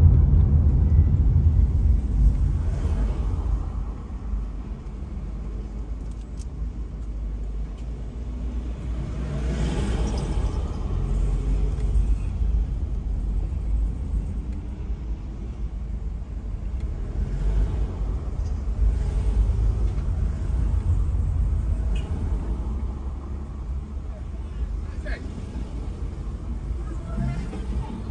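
Low, steady rumble of a car's engine and tyres heard from inside the cabin while driving slowly in traffic, louder in the first few seconds and then easing off.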